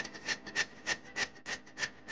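A blade scraping bark off a durian tree trunk in quick, regular rasping strokes, about three a second.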